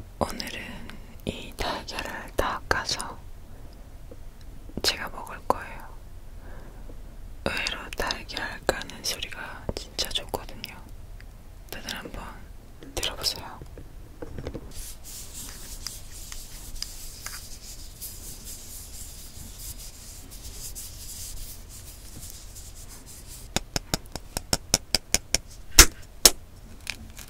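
Soft close-up whispering, then near the end a quick run of about ten sharp taps: eggshells being cracked by knocking the eggs together.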